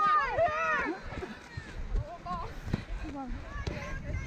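High-pitched shouts and calls from girls on the field in the first second, then faint scattered voices over uneven thuds of running footsteps on grass.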